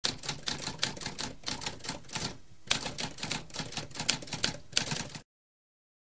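Typewriter keys being struck in a quick, uneven run of clacks, with a brief pause about halfway through, stopping suddenly about five seconds in.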